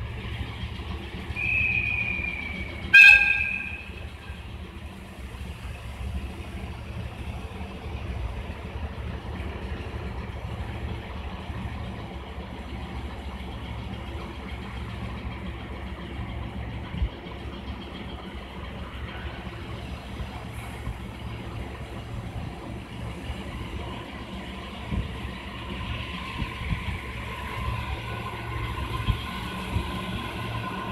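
A short, sharp train horn blast about three seconds in. A train's engine then runs steadily at the platform, and near the end a rising mechanical noise and whine builds as the JR East HB-E210 hybrid train starts to pull away.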